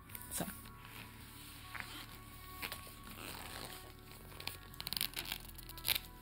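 Plastic-covered vintage Barbie trading-card binder being handled: soft crinkling and rustling of its plasticky cover, with a quick run of small crackles and clicks near the end.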